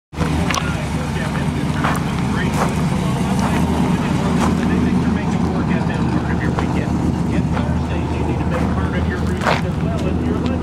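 A Chevrolet Corvette V8 idling steadily, a low even rumble that holds its pitch without revving.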